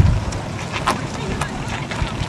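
Wind buffeting the camera microphone over the low rumble of a large American sedan driving slowly past, with a few brief clicks.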